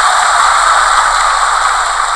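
A large seated audience applauding, a dense and steady clapping.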